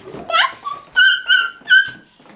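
A toddler's high-pitched squeals: a rising squeal about half a second in, then three short, shrill squeals in quick succession.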